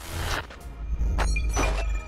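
Electronic glitch transition sound effect for an animated title card: a hissing whoosh at the start, crackling glitch hits about a second in, and a deep bass rumble with a thin high steady tone in the second half.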